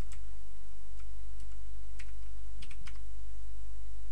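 A few separate keystrokes on a computer keyboard, some in quick pairs, as shell commands are entered, over a steady low hum.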